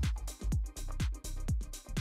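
Background electronic music with a steady, fast beat of kick-drum thumps, a few to the second.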